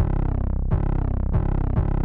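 Distorted 808 bass sample being previewed: three hits about two-thirds of a second apart, each sliding down in pitch.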